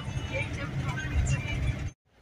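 Car driving, heard from inside the cabin: a steady low rumble of engine and road noise, with faint voices over it. It cuts off abruptly near the end.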